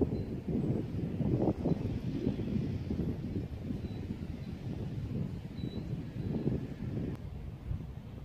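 Wind buffeting the microphone outdoors: an uneven, gusty low rumble with no clear tones, easing a little near the end.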